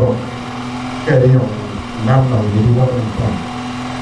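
A man speaking into a microphone in short phrases with pauses between them, over a steady low hum.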